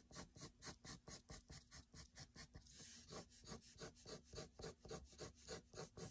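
Faint scratching of a dark graphite pencil on drawing paper in quick, short, lifted strokes, about five a second, with one longer stroke near the middle.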